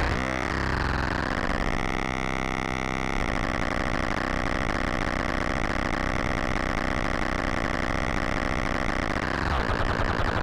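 Cosmotronic Vortex complex oscillator droning, its knobs being turned by hand: a continuous tone rich in overtones that sweeps in pitch and timbre during the first second or so, then holds steady and shifts again near the end.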